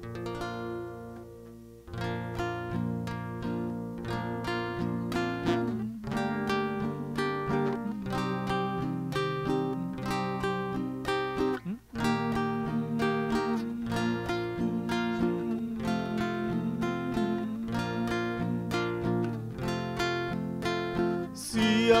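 Acoustic guitar playing the instrumental introduction of a song: one chord rings out and fades, then steady strummed chords start about two seconds in. A voice begins singing right at the end.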